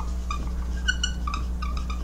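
Dry-erase marker squeaking on a whiteboard in a series of short strokes as a word is written, over a steady low hum.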